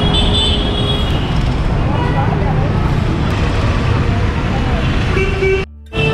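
Busy street traffic: motor vehicles running and passing, with a short horn toot near the start and the voices of passers-by.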